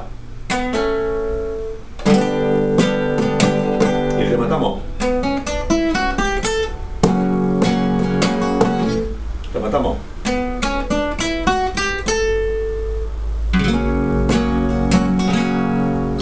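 Classical guitar playing a rumba melody: plucked single notes and chords in short phrases, with strummed chords starting phrases about 2, 7 and 13 seconds in.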